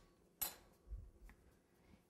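Faint handling noises on a countertop: a sharp light click about half a second in, then a soft low thump a little later, as hands and a pizza cutter work around the cake.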